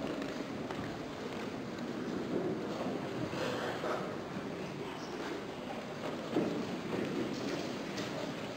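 Quiet ambience of a large hall: a faint, steady murmur and shuffling, with soft footsteps and one slightly louder knock about six seconds in.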